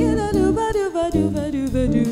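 Jazz quartet playing: a female singer scat-singing a wordless line that bends and slides in pitch, over electric guitar, electric bass and a drum kit with cymbals.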